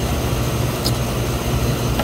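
Steady low machinery drone, like rooftop equipment running, with a single light tick about a second in.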